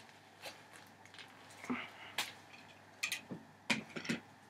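Faint, scattered small clicks and rustles of a plastic fashion doll and its plastic stand being handled.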